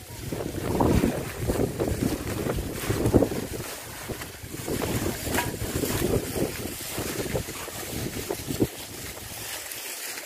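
Wind buffeting the microphone in gusts, an uneven rumbling noise that swells and eases.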